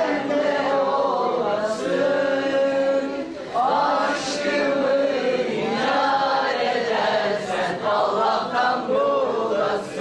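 Vocal music: a man singing slow, long-held notes that bend gently in pitch.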